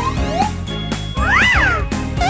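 Background music with a cartoon sound effect laid over it: a short pitched glide that rises and then falls, about a second and a half in.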